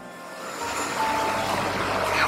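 Soft background music under a steady noise hiss, dipping briefly at the start and then rising back.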